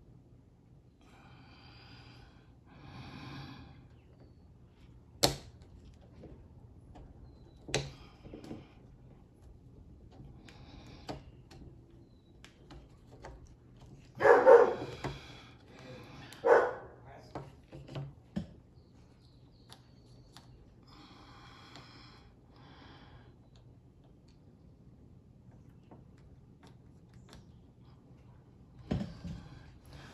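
Handling noise from the housing halves of a Valken M17 paintball marker being fitted together by hand: small knocks, with two sharp clicks about five and eight seconds in. The halves are not seating, because the parts inside are not lined up. A couple of louder short sounds come in the middle.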